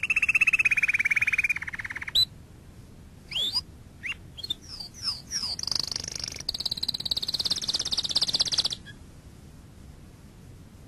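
Animal calls: a fast pulsing trill at the start, then short chirps falling in pitch, then a second, higher-pitched trill lasting about three seconds before stopping.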